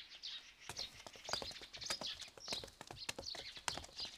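Faint birdsong chirping, with scattered light clicks and taps throughout.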